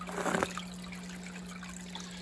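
Frozen bloodworm cubes tipped from a plastic tray into an aquarium: one short splash and rattle a fraction of a second in. Underneath are steady water running in the tank and a low hum.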